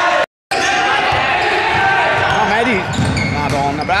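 Futsal ball being kicked and bouncing on the sports hall floor, with players shouting, echoing in the hall. The sound cuts out briefly near the start.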